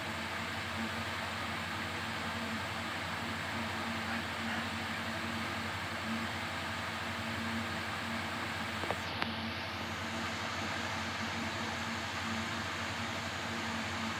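Steady background hum and hiss with no speech, and two faint clicks about nine seconds in.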